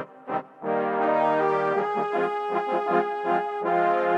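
Sampled brass section of trombones and trumpets (a Kontakt Session Horns Pro patch) playing a chord part from a MIDI piano roll: a few short stabbed notes, then held chords from about half a second in.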